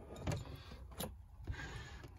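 Small china saucer slid across a wooden desktop and picked up. Two light clicks come first, then a soft, steady scraping hiss through the second half.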